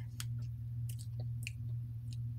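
Faint wet mouth clicks and lip smacks, a few scattered ones, as she tastes the lingering aftertaste, over a steady low electrical hum.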